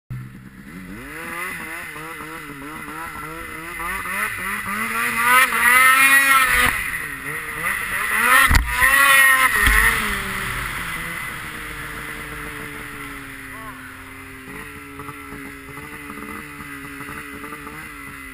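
2013 Polaris Pro RMK 800 snowmobile's two-stroke twin engine revving up and down under throttle, climbing to a loud peak about six seconds in, with a sharp thump about eight and a half seconds in as it revs hard again. It then settles to a steadier, lower drone.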